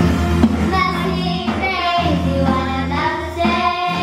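Children's band playing a song: young girls singing together into microphones over keyboard accompaniment, with held low chords that change about every two seconds.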